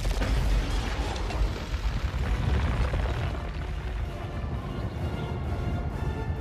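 Film sound effects of a blast bursting through the wall of a concrete apartment building: a heavy, sustained low rumble with crashing debris. Film score music plays under it and becomes clearer in the last couple of seconds.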